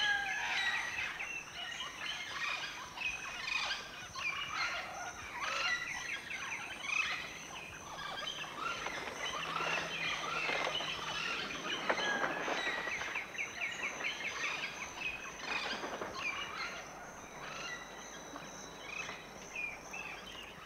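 A flock of mealy parrots (mealy amazons) squabbling continuously, with a dense run of harsh short calls and rapid chattering notes, some of them loud.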